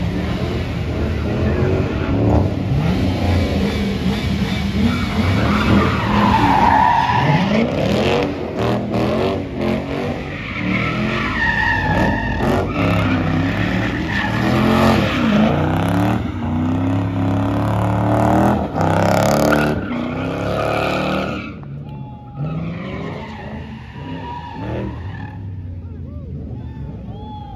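A car doing burnouts and donuts: the engine revs hard, rising and falling as it spins, while the tyres squeal against the asphalt and smoke. It gets quieter over the last few seconds.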